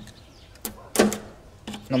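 Two short, sharp clicks of a screwdriver working at the breakers of an electrical main panel, the second louder, about two-thirds of a second and a second in.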